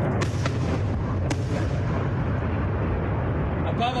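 Continuous rumbling of rocket and interceptor blasts in the sky, with a few sharp cracks in the first second and a half.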